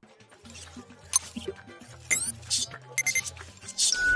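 Film soundtrack: music over a low steady bass, with short scrapes and clicks of a knife blade being sharpened on a stone, and a quick upward glide about two seconds in.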